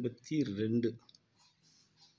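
A voice speaks briefly in the first second. Then comes the faint scratching and ticking of a ballpoint pen writing numbers on notebook paper.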